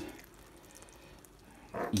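A near-silent pause with a faint, steady hiss and no distinct events. A man's voice starts again near the end.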